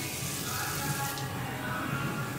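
Tap water running from a small sink faucet into a plastic bottle, cutting off about a second in, over background music.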